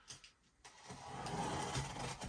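Faint sliding and rubbing of cardboard packaging being handled, starting about two-thirds of a second in and building into a steady scraping.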